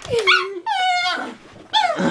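Small dog whining in three drawn-out calls, the middle one the longest and highest, each sliding down in pitch.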